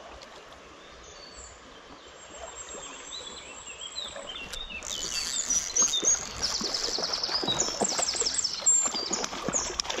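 Birds chirping over a shallow creek's running water. From about halfway it gets louder, with repeated splashes from a hooked trout thrashing at the surface as it is reeled in.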